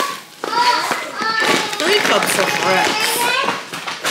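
Children's voices, talking and calling out in high pitch, with a short lull near the start.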